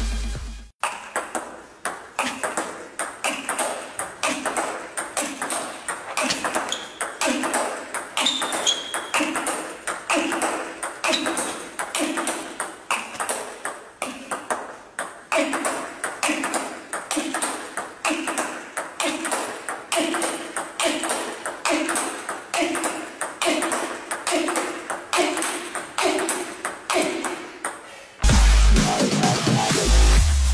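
Table tennis rally against a homemade return board: a steady, even run of sharp ball clicks, several a second, as the celluloid ball strikes the paddle, the table and the rubber-faced wooden board in turn.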